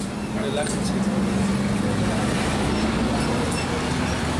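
Street traffic noise with a steady low engine hum, under background voices.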